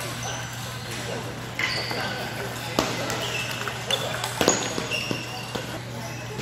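Table tennis balls clicking off bats and tables around a busy playing hall, scattered and irregular, with a few short high squeaks and a murmur of distant chatter.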